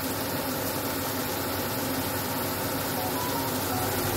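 Steady sci-fi drone: a constant low hum under an even hiss, unchanging throughout.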